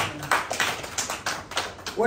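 Chalk striking a blackboard as short tally strokes are drawn, a quick run of taps about six a second.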